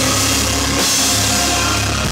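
A live band playing an instrumental passage with no singing, the drum kit to the fore and cymbals washing over a heavy bass.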